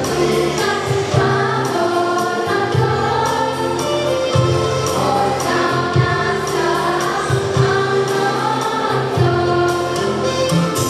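Girls' choir singing in unison and harmony over instrumental backing, with steady low bass notes and a regular percussive beat.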